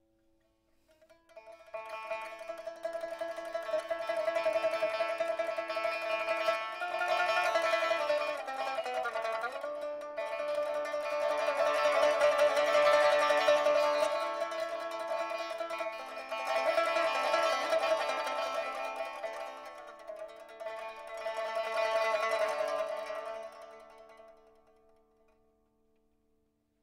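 Pipa (Chinese lute) music: a plucked-string melody of held notes that comes in about a second and a half in, swells in several phrases with a downward pitch bend near the middle, and fades out near the end.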